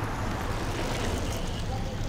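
A car driving past on a city street: a steady rush of engine and tyre noise over street ambience.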